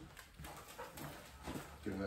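Faint footsteps of a person and a dog's paws on a tiled floor as they walk, with a brief vocal sound near the end.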